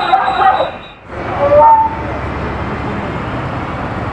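Street traffic noise, steady after a short dip about a second in, with a brief horn toot stepping up in pitch shortly after.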